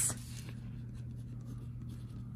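A pen writing numbers on lined notebook paper, faint scratching strokes.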